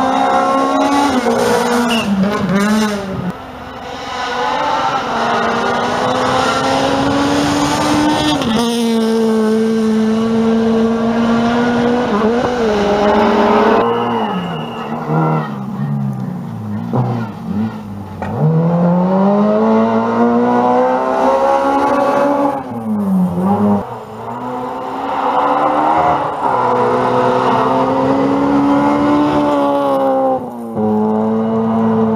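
Rally cars driven flat out on a gravel special stage, engines revving high and climbing in pitch through each gear, with sharp drops and re-climbs as the drivers lift, brake and shift for corners. Several short passes follow one another.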